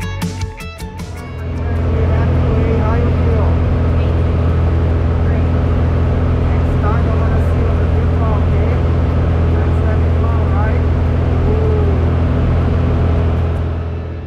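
Steady drone of a small propeller plane's piston engine and propeller heard from inside the cabin, starting about two seconds in as music fades out, with faint voices under it.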